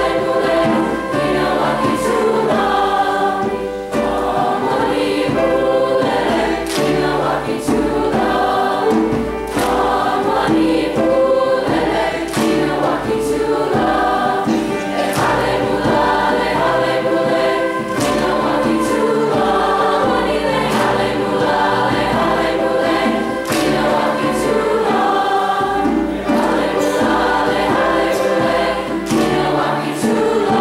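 Large mixed choir singing a Zulu song in several parts, the voices moving together in steady rhythm, with sharp percussive hits scattered through.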